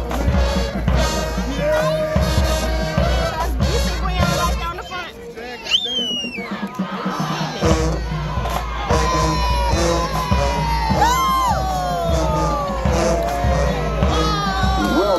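High school marching band playing, with drums and horns. A crowd is shouting and cheering over it. About five seconds in, the drums drop out for a couple of seconds, then come back.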